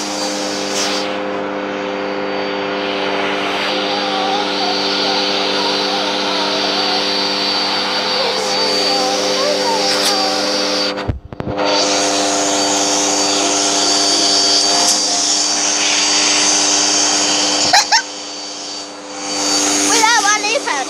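Household vacuum cleaner running steadily, a constant motor hum with a hissing airflow. The sound cuts out for a moment about eleven seconds in, and dips briefly near the end before rising again.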